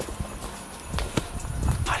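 Footsteps walking down a stony dirt path: a handful of uneven steps, each a short knock.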